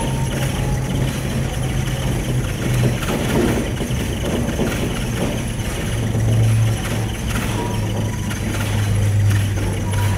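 Steady low hum and rumble of a gondola cabin running along its cable, with the hum dropping slightly in pitch about six seconds in.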